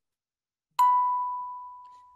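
A single bell-like chime, struck once: a bright attack settling into one steady note that fades away over about a second and a half.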